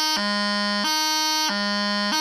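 Bagpipe practice chanter playing the heavy D tap exercise: held notes that switch between a higher and a lower pitch about every two-thirds of a second, with a quick tapping grace note struck down to low G between them.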